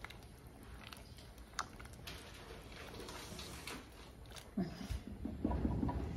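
Faint, scattered clicks and taps of a plastic spoon against the side of an aluminium soup pot during stirring.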